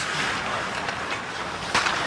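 Ice hockey play heard from the rink: a steady hiss of skates on ice and arena noise, with a sharp knock near the end.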